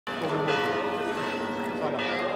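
Church bells ringing, many ringing tones overlapping and held, with crowd voices underneath.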